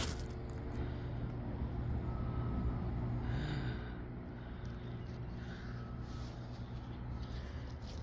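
Steady low machine hum in the background, with a brief louder hiss about three and a half seconds in.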